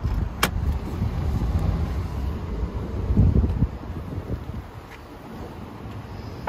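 Toyota Solara's power convertible top finishing its fold, with a low steady running hum. There is a sharp click about half a second in and a heavier clunk a little after three seconds, then it quiets at about five seconds as the mechanism stops.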